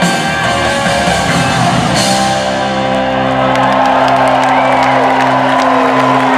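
Live rock band with electric guitars and drums playing a song's closing bars: a last drum hit about two seconds in, then the final chord held and ringing while the crowd begins to whoop and clap.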